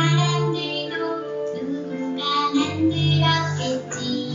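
A song with singing voices, children's and women's, over instrumental backing.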